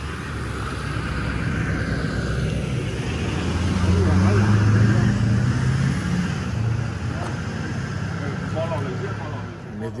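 Steady low engine rumble from motor vehicles on the street, loudest around the middle, with faint voices talking in the background.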